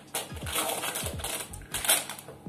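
Plastic food packets crinkling as they are handled and shaken, an irregular crackle with a loud burst just before the end.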